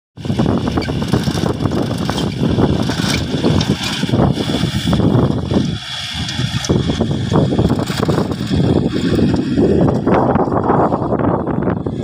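Farm tractor engine running under load as it pulls a rotary tiller through dry ground, with gusty wind buffeting the microphone.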